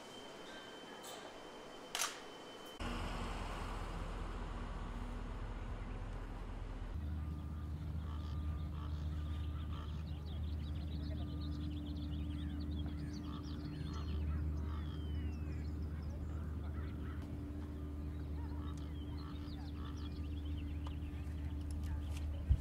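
Outdoor ambience: a steady low hum with many short bird calls and chirps scattered over it. A sharp click comes about two seconds in, before the hum starts.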